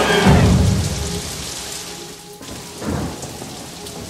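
Heavy rain falling steadily, with a low roll of thunder in the first second or so that fades away.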